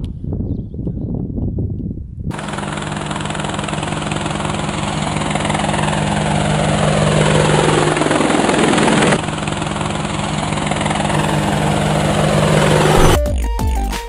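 Outro sound effect: a loud, even rushing noise over a steady low hum, with sweeps falling in pitch. It drops suddenly about nine seconds in and carries on lower. Near the end, electronic music with a heavy beat starts.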